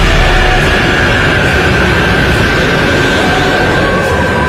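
Anime energy-blast sound effect: a loud, sustained rush of noise with a high tone slowly falling in pitch, mixed with dramatic music.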